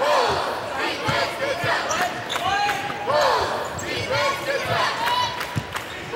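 A basketball being dribbled on a hardwood court, with sneakers squeaking in short chirps as players cut and stop. Voices carry in the arena.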